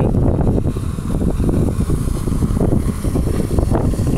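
Wind buffeting the microphone: a loud low rumble that rises and falls without letting up.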